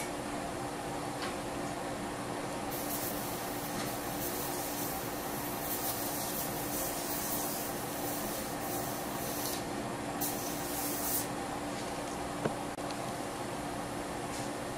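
Compressed air from dental equipment hissing high-pitched in two stretches, a long one starting about three seconds in and a shorter one about ten seconds in, over a steady low hum.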